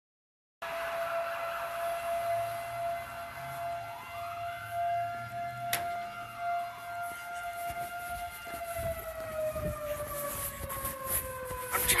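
A siren holds one steady wailing tone for several seconds, then its pitch slowly slides down as it winds down. Footsteps of someone hurrying are heard in the last few seconds.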